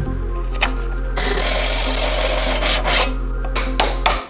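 A flat steel hand tool scraping and filing across the end of a wooden hammer handle, shaping it to fit the hammer head; the rasping runs for about two seconds midway. Sustained low background music plays underneath.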